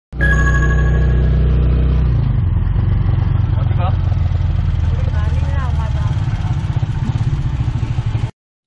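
Motorcycle engine of a Philippine tricycle running under way, heard from inside its covered sidecar. Its note changes about two seconds in to a faster, pulsing beat.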